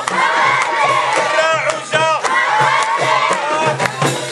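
A crowd of children chanting and shouting together, with rhythmic hand clapping.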